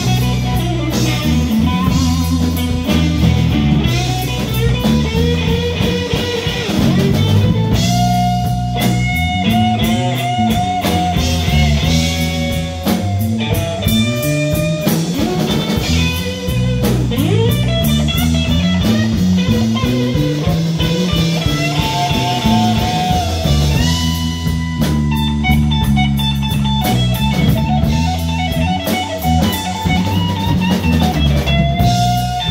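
Live blues band playing an instrumental passage of a slow blues, with no singing: electric guitar lead lines with bent notes over bass guitar and drum kit.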